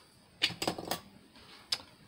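Small craft tools clicking and clattering on a desk as they are set down and picked up: a quick cluster of clicks about half a second in, and one more click near the end.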